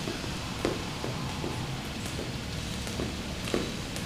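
Jump rope skipping in a running-in-place style: faint, uneven taps of the rope and feet on the gym floor, a few a second, over a steady low room hum.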